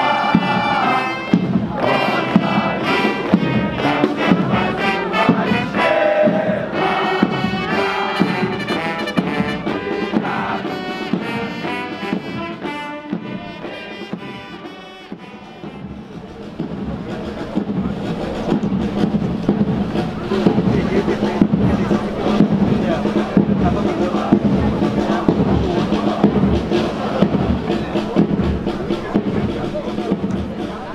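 Military brass band playing a march. About halfway through the band fades, and crowd murmur mixed with fainter band music takes over.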